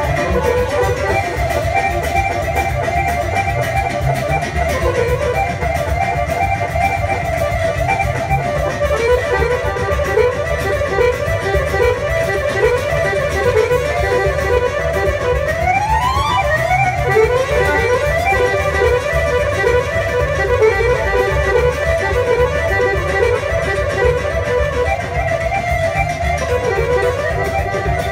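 Live Balkan accordion music: two accordions playing fast, ornamented melody runs over double bass and keyboard accompaniment with a steady beat. A quick upward run comes just past the middle.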